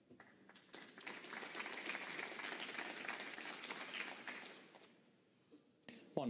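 Audience applauding, swelling about a second in and dying away after about four seconds.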